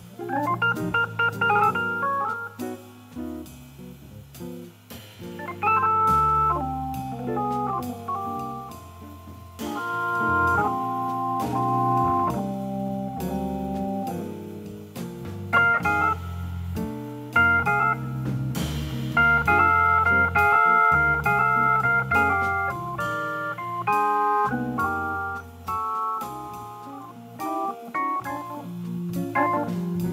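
Hammond organ playing jazz chords over a moving bass line, with drums and cymbals keeping time behind it.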